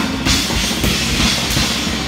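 Live rock band playing: drum kit with bass drum under electric guitar and keyboards, loud and continuous.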